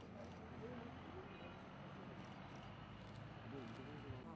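Faint, distant talking over a steady low hum of background noise.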